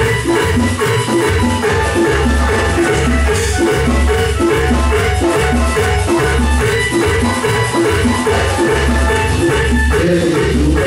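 Live Latin dance band playing, loud: a steady repeating bass line with keyboard and hand percussion over it.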